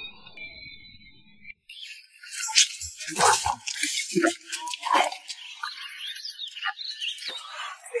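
A person slurping and chewing hot dry noodles: a run of quick, wet sucking and chewing sounds starting about two seconds in, after a brief musical cue at the start.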